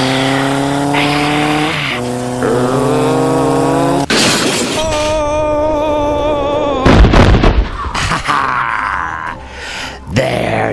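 Dubbed motorcycle engine sound effect revving, rising slowly in pitch for about four seconds. Then comes a sharp hit and a wavering tone, and a loud boom about seven seconds in.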